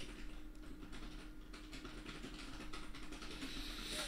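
Faint, rapid typing on a computer keyboard over a steady low electrical hum.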